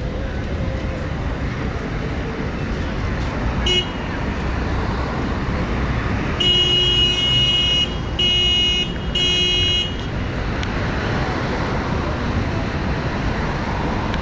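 Street traffic running steadily, with a vehicle horn sounding three times in a row about halfway through: one long toot, then two shorter ones. A brief beep comes a couple of seconds before them.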